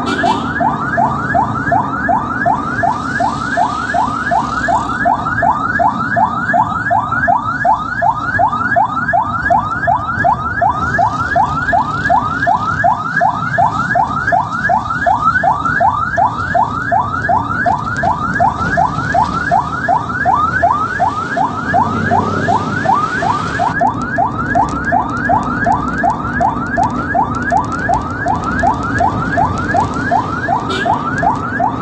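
Ambulance electronic siren in yelp mode, a fast rising sweep repeating about three times a second without a break, heard from inside the moving ambulance with engine and road rumble beneath: the vehicle is on an emergency run carrying a critical patient.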